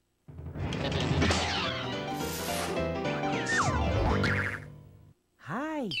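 A short, busy children's-TV music jingle with cartoon sound effects: pitched notes with sliding glides, one falling then one rising past the middle, and a swish about two seconds in. It begins after a brief moment of silence and cuts off about five seconds in.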